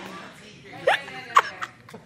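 A person laughing in two short, high, squealing bursts about half a second apart.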